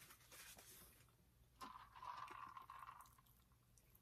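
Near silence with faint mouth sounds of chewing food, a little louder for a second or so in the middle.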